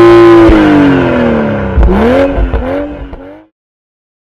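Toyota GR Supra engine and exhaust held at high revs, the pitch sliding down as the throttle closes, then a few quick rev blips rising and falling before the sound cuts off suddenly.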